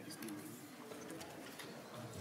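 Faint murmur of low voices in a large hearing room, with scattered light clicks and paper rustles.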